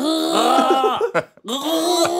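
A person imitating a car klaxon with their voice, a note held with a gargle in the throat. Two held tones, each swooping up at the start and dropping away at the end, the second beginning about one and a half seconds in.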